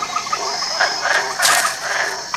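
Night-time jungle ambience: a steady high trilling of insects with short, repeated chirping calls of frogs, and a brief rasping burst about one and a half seconds in.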